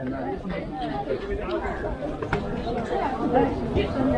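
Chatter of many people talking at once among the market stalls, several voices overlapping with no single voice standing out.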